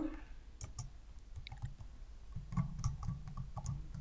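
Computer keyboard being typed on, an irregular run of light key clicks as a word is typed out.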